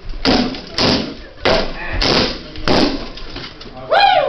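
Rattan weapons striking in SCA heavy-combat sparring: five loud, sharp hits, roughly every half to two-thirds of a second, each with a brief rattle after it.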